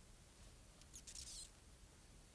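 Near silence: room tone, with a faint short hiss about a second in.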